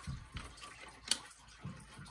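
Quiet handling of paper banknotes in a desktop cash sorter: a few soft knocks as the stacks are pushed and squared, and one sharp click about a second in.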